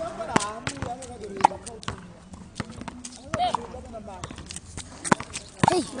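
Tennis balls being struck by rackets and bouncing on a court: sharp, irregularly spaced knocks, with voices calling out between the shots.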